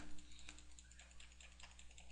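Faint computer mouse button clicks in quick succession, several a second, as points are clicked onto a surface.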